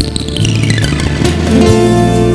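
Instrumental Spanish guitar music: a struck chord opens a quick run of notes falling in pitch, then sustained chords over a steady bass come back in shortly before the end.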